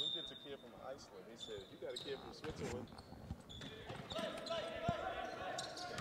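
Basketball gym sound at a low level: a basketball bouncing on the hardwood court, with short sharp strikes and faint voices of players and spectators echoing in the hall.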